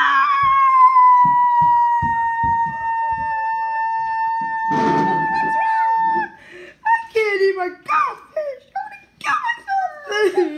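A person's high-pitched voice holds one long wail for about six seconds, its pitch easing down slightly, then breaks into short high-pitched cries and squeals. A brief rustle comes about five seconds in.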